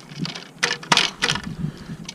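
A few sharp clicks and knocks of the hard plastic parts of a fishing rod transporter being handled and fitted together, the loudest about a second in.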